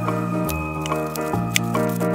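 Background music: a light instrumental tune, its bass note changing about every 0.8 seconds.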